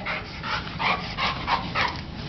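Black Labrador mouthing and playing, making a quick run of short breathy sounds, about two to three a second.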